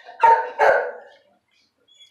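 A dog gives two short barks, about half a second apart.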